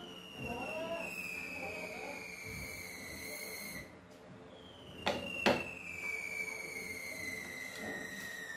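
Two long, high whistling tones, each gliding slowly down in pitch over about four seconds. Between them, about five seconds in, come two sharp knocks as the aluminium table plate is handled.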